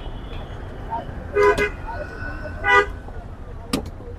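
Two short vehicle horn toots about a second and a half apart over steady street traffic, then a single sharp chop near the end, a cleaver striking a wooden chopping block.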